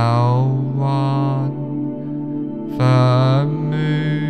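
Meditation music: a steady low drone with long chanted, mantra-like vocal notes rising over it several times.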